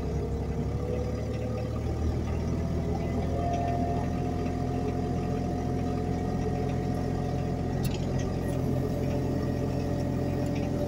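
Wacker Neuson ET20 mini excavator's diesel engine running steadily, heard from inside the cab, with a hydraulic whine that steps up in pitch about three and a half seconds in as the boom moves. A short click comes near eight seconds.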